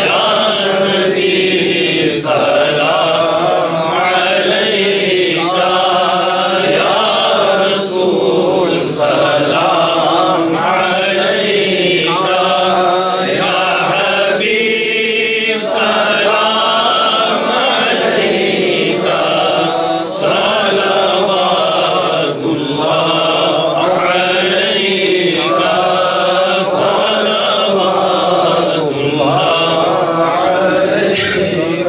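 Two men's voices chanting an Islamic devotional recitation together, unaccompanied, in long wavering melodic phrases that run on without a break.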